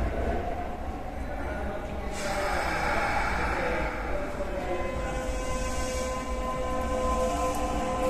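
Kintetsu 5800-series electric train pulling slowly into an underground station, a steady rumble of wheels on rail. A steady whine sets in about five seconds in as it slows toward its stop.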